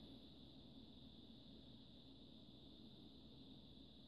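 Near silence: faint steady room tone with a high hiss.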